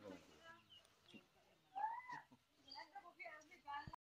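Near silence with faint background voices, and one short call that rises and falls in pitch about two seconds in. The saw and its engine are not running.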